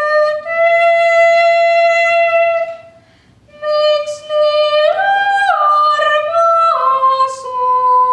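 A teenage girl singing solo without accompaniment in a high voice: a long held note, a breath, then a phrase that steps up to its highest note around the middle and falls back down.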